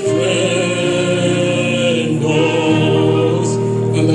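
A gospel song: a man's voice leads through a microphone, other voices sing along, and held low accompaniment notes change every second or so.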